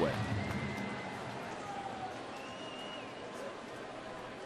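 Steady murmur of a ballpark crowd between pitches, with a couple of faint high-pitched tones over it in the middle.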